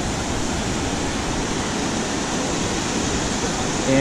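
White-water river rapids rushing over rocks, a steady even roar of water.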